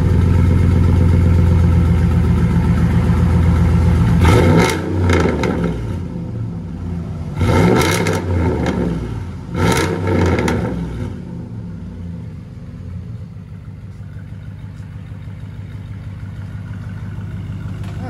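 2004 Dodge Dakota's 4.7L V8 through a straight-piped dual exhaust with high-flow converters, running loudly at first, revved briefly three times, then settling to a quieter, steady idle.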